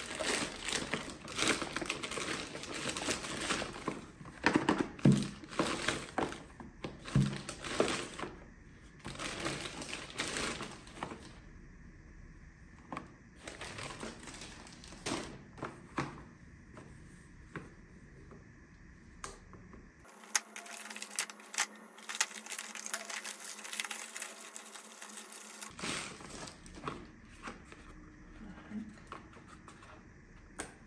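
A plastic poly mailer crinkling and rustling as it is pulled open and unpacked, with paper-wrapped items handled and set down on a wooden table in light knocks. Busiest and loudest in the first ten seconds or so, then sparser handling.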